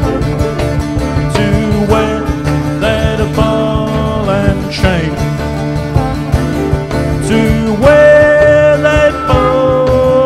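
A live acoustic country-blues band playing an instrumental break: a harmonica plays the melody with bent notes over upright bass and plucked strings keeping a steady beat, ending on a long held note near the end.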